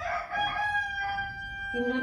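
A rooster crowing: one long call held on a steady pitch for nearly two seconds, with a person starting to speak near the end.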